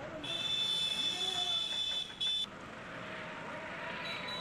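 Outdoor street noise with a high, steady electronic-sounding tone that runs for about two seconds, cuts off, sounds again briefly, then gives way to lower steady background noise.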